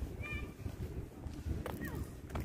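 Outdoor walking ambience with a steady low rumble on the microphone. A short high-pitched call comes about a quarter second in, and a brief falling squeak with a click comes near the end.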